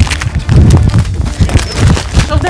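Rapid low thuds and rustling from packaged groceries being grabbed and handled in a hurry.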